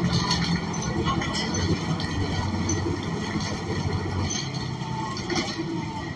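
Cabin sound of a New Flyer XN40 city bus under way: the rear-mounted Cummins Westport ISL G natural-gas engine gives a steady low drone, with short rattles and clicks from the body and fittings. The deepest part of the drone lessens about four seconds in.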